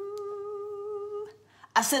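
A woman humming one steady, held note for a little over a second.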